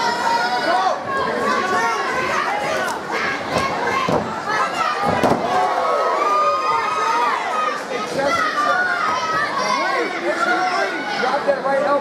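Fight crowd and cornermen shouting and yelling, many voices overlapping without a break.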